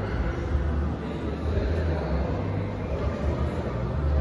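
Steady indoor ambience of an exhibition hall: a low rumble under an even wash of background noise, with faint voices.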